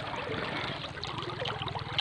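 Water trickling and sloshing around a person standing waist-deep in a river, a steady, fairly quiet wash.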